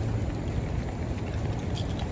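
Steady low rumble and hiss of wind on a phone's microphone.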